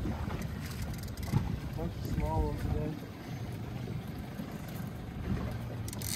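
Wind rumbling on the microphone over the noise of a small outboard fishing boat on open water, with a brief faint voice about two seconds in.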